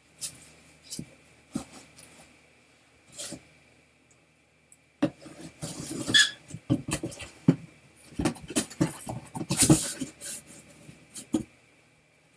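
Handling noise of wrapped trading-card packs being pulled out of a shelved box. A few scattered clicks come first, then from about five seconds in a busier run of rustling and knocking, loudest just before ten seconds.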